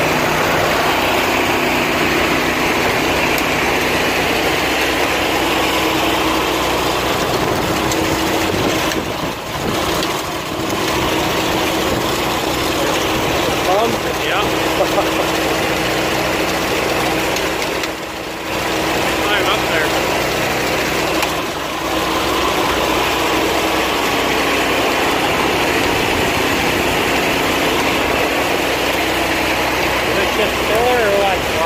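Engine running steadily at idle while a grain auger runs and grain pours from a grain truck's chute into the auger hopper, a continuous mechanical drone with a steady hum. The level dips briefly a few times.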